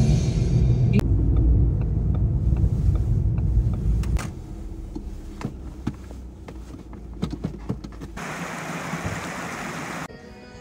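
Low road rumble inside a hatchback's cabin while driving, dropping off sharply about four seconds in as the car pulls up. A few scattered clicks follow, then a steady hiss over the last two seconds.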